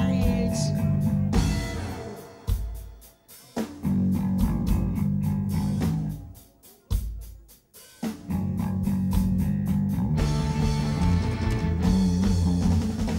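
Live rock band, with bass guitar, electric guitar and drums, playing an instrumental passage that stops twice, with single hits landing in the gaps before the full band comes back in.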